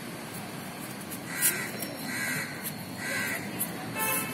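A crow cawing three times, a little under a second apart: short, harsh calls.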